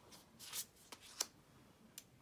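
Tarot cards handled by hand, one card slid off a pile and laid onto another: a short papery swish about half a second in, then a few light clicks of card edges.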